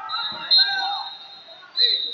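Indistinct voices of spectators in a large gymnasium, over a steady high-pitched tone, with two louder sharp moments, one about half a second in and one near the end.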